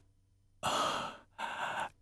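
A man's breathy sigh, then a second, shorter breath, both without voice.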